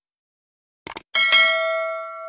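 Subscribe-button sound effect: a quick double mouse click just before the middle, then a bright notification-bell ding that rings on and slowly fades.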